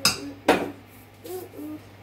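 A metal spoon clanking twice against a steel mixing bowl, about half a second apart, as thick cake batter is stirred.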